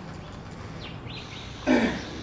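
A short, loud vocal sound near the end, human or animal, over a steady low hum and a few faint high chirps.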